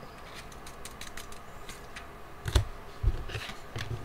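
Trading cards in plastic sleeves being handled: light plastic rustles and scattered small clicks, with a couple of soft thumps past the halfway point as cards are set down on the playmat.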